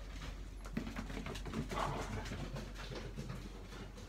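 Dogs moving about on a hard floor, with scattered light clicks and a short dog sound about two seconds in.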